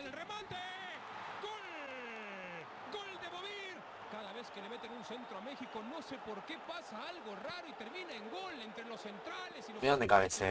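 A football television commentator speaking over a steady background of stadium crowd noise, lower in level than the voice around it.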